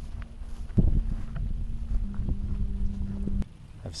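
Wind rumbling on the microphone of a handheld camera while walking over grass, with footsteps and a sharp handling bump about a second in. A faint steady low hum runs underneath and drops slightly in pitch midway.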